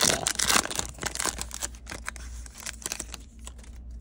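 Foil trading-card pack wrapper being torn open and crinkled by hand, a quick run of crackling rustles that fades after about two and a half seconds.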